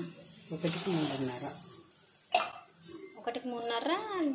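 A woman's voice talking in a small room, with one sharp click a little past the middle.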